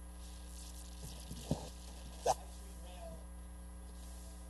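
Steady electrical mains hum from the sound system, with faint murmuring voices and two brief knocks, the louder one a little past the middle.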